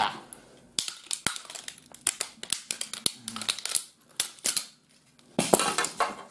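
The plastic and sheet-metal parts of a dead DVD player being pried and snapped apart by hand: a run of sharp cracks, clicks and rattles, with a dense burst of cracking near the end.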